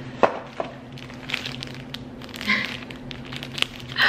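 Handling of a small cardboard box and a cupcake in a clear plastic bag: a few scattered sharp clicks and a brief rustle as it is opened and the cupcake lifted out, over a low steady hum.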